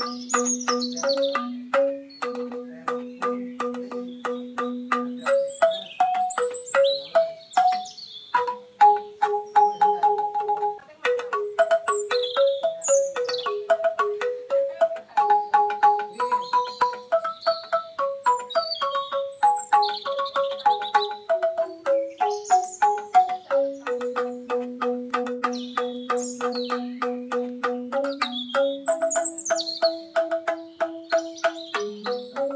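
Angklung Banyuwangi music: struck bamboo instruments played in a quick tremolo, a melody of rapidly repeated notes moving over lower repeated notes. Short high birds' chirps are heard over the music throughout.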